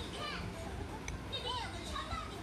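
High-pitched cartoon voices speaking from a television showing a children's programme, in short phrases over a low steady background hum.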